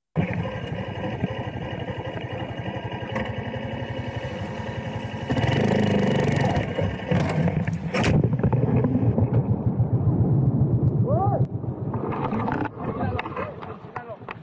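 Small motorcycle engine running under way with wind rushing past the rider's microphone. It grows louder about five seconds in, then a sudden crash into brush comes near the eight-second mark with rustling branches. Raised voices follow near the end.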